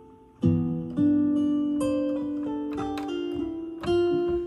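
Sampled Martin D-41 acoustic guitar from the Ample Guitar Martin plugin, played from a MIDI keyboard. Plucked notes come in about half a second in, then a chord is held while higher melody notes change above it, with another pluck near the end.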